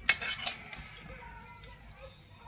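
A steel ladle clinking twice against a metal serving bowl while scooping curry, two quick ringing knocks close together near the start, the first the louder.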